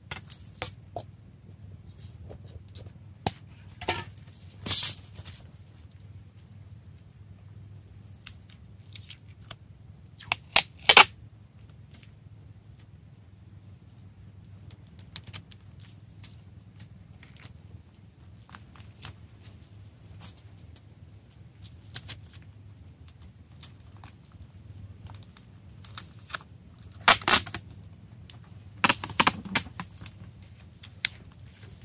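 Adhesive tape ripped off a roll in short pulls, a handful of times with long pauses between, along with small snips and handling sounds as the strips are cut with scissors.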